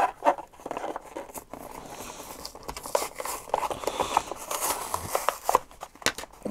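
Plastic blister pack being pried open by hand and its card backing peeled away: irregular crackling of the plastic and tearing of cardboard.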